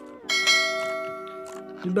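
A single bell-like chime in the background music, struck once and ringing as it fades over about a second and a half.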